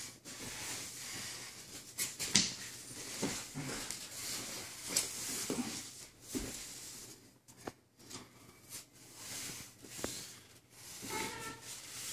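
Two grapplers rolling on foam mats: bodies and limbs shifting and landing on the mat, with rustling and scattered short knocks. A brief voice sound near the end.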